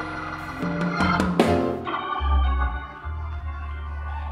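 Organ playing sustained chords, with a deep bass note coming in about halfway. A few sharp hits sound over it in the first half.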